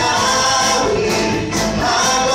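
A group of singers with a live band of acoustic and electric guitars performing a Tagalog Christmas song, with a tambourine in the mix. The music is loud and continuous.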